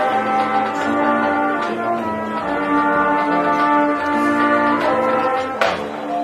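Marching band playing held brass chords that move from chord to chord, with a single crash about five and a half seconds in.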